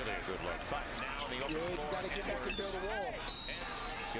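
NBA game broadcast sound playing quietly under the reaction: arena crowd noise with a commentator talking, and court sounds of the ball and sneakers on the hardwood.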